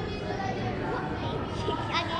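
Indistinct background chatter of several people talking at once in a gymnasium, with no single clear speaker.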